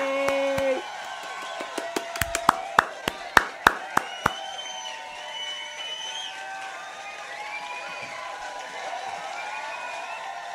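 A man's held cheer of "yay" ends just under a second in, followed by about a dozen hand claps in an irregular run that stops about four seconds in.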